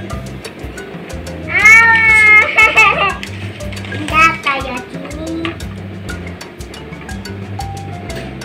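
Background music with a steady beat. A young child lets out a high-pitched squeal about 1.5 s in that lasts over a second, then a shorter one around 4 s.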